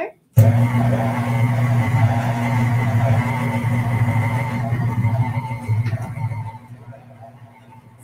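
Electric tilt-head stand mixer switched on, its motor running with a steady hum as the paddle beats shortbread dough. It starts suddenly about half a second in and winds down and fades near the end.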